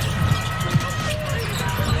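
Broadcast arena sound of live basketball play: a ball dribbled on the hardwood court over steady crowd noise, with a high squeal held for about a second near the start.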